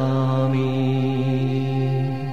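A singer holds one long, steady note at the end of a sung line of a Sanskrit devotional hymn.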